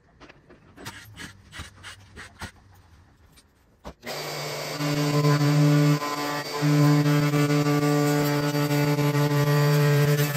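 Faint clicks and knocks as a cabinet's glass-panelled wooden door is handled and swung open. Then, about four seconds in, a Makita plunge router takes over, loud and steady, cutting an oak door frame, with a brief dip in its tone about two seconds later.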